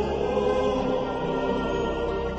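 Background choral music: voices singing long held notes.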